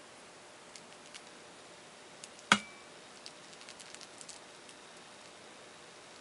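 A flat brush pouncing paint onto a glass wine glass, making faint scattered ticks. About two and a half seconds in there is one sharp tap on the glass that rings briefly.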